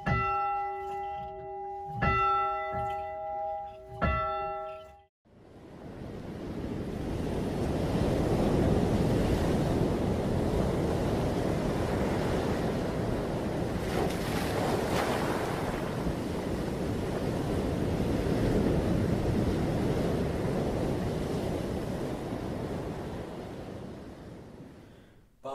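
A tower bell tolling, three strikes about two seconds apart, each ringing on, cut off suddenly about five seconds in. Then ocean surf breaking on a rocky shore, a steady rush that builds up and slowly fades near the end.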